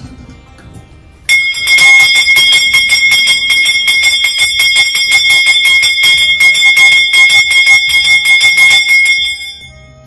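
Puja hand bell rung rapidly and continuously, a bright ringing over a fast clatter of clapper strokes. It starts suddenly about a second in and dies away shortly before the end.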